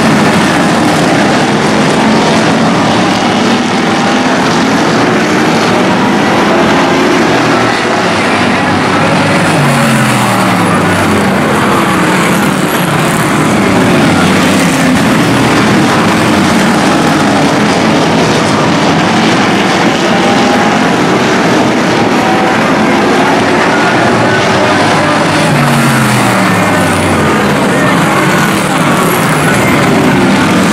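A field of hobby stock race cars running hard around an oval track, engines at high revs, with engine notes falling in pitch as cars sweep past about ten seconds in and again near the end.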